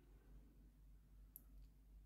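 Near silence: room tone with a low hum, and one faint, sharp little click about one and a half seconds in.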